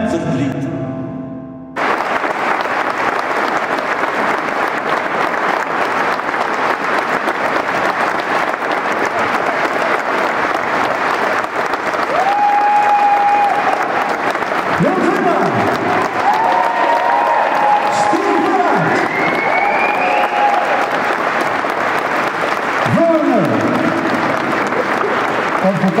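The song's last note fades out, then audience applause breaks out about two seconds in and keeps going steadily, with people talking over it in the second half.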